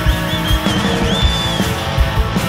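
Live rock band playing: electric guitar, bass and drum kit, with a steady kick-drum beat about two to three times a second. A high lead note bends and wavers in pitch above the band.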